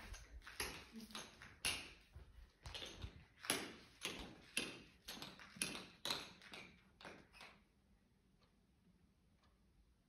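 Tap shoes striking a hard floor: a run of irregular metal taps, two or three a second, that stops about seven and a half seconds in.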